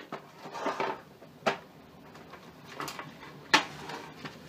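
A metal colored-pencil tin being opened by hand: light knocks and rustling handling noise, with a sharp click about one and a half seconds in and a louder one near three and a half seconds.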